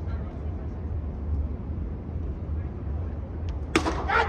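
A steady low hum, then near the end a single sharp crack of a cricket bat hitting the ball.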